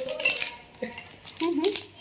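Light clinks and knocks of stainless steel bowls and plates being handled, with a short bit of voice about three-quarters of the way in.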